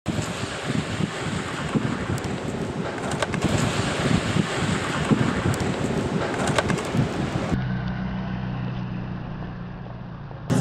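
Wind buffeting an outdoor microphone: a loud, irregular rumble with a few sharp clicks. About seven and a half seconds in it cuts off abruptly to a quieter, duller stretch with a steady low hum.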